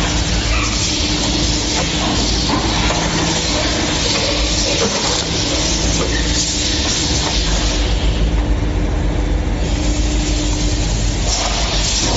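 Steady, loud factory machinery noise from a silicone rubber moulding press: a constant rumble and hiss with a faint hum.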